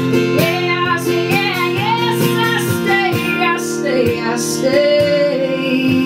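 A woman singing slow, drawn-out notes that slide between pitches, over her own strummed acoustic guitar, settling on one long held note near the end.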